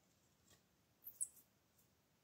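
Near silence with faint handling of a plastic drive enclosure: a soft tick about half a second in, then a brief high scratchy rub of plastic about a second in.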